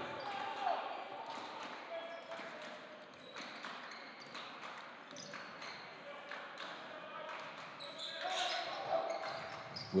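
A basketball being dribbled on a hardwood gym floor, with irregular bounces and the voices of players and spectators carrying in the large gymnasium, all fairly faint.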